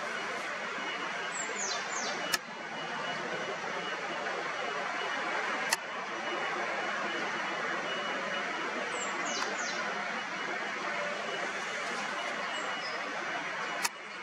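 Steady outdoor background noise with two brief clusters of high, downward-sliding bird chirps, one about two seconds in and one about nine seconds in. Three sharp clicks stand out, the last near the end.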